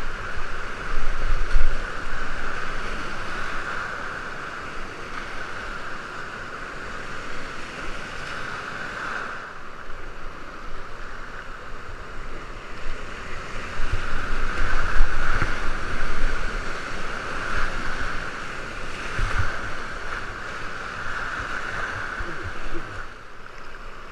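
Whitewater rapids rushing around a kayak at close range, with irregular splashes as the boat runs through the waves. Louder and choppier near the start and again in the second half, steadier and calmer in between.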